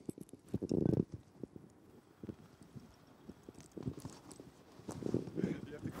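Quiet stretch with faint, muffled voices and a few soft knocks and handling sounds, the clearest about a second in and again near the end.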